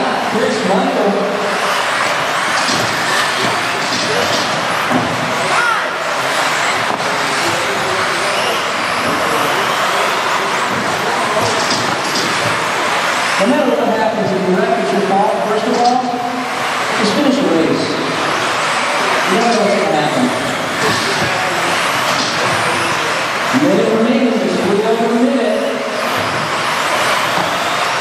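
Several 2WD modified-class electric RC buggies racing together on a carpet track: a steady, continuous blend of motor and drivetrain noise from the pack.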